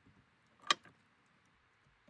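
Faint handling of a silicone craft mold on a cutting mat, with one sharp click about a third of the way in and a softer click just after it.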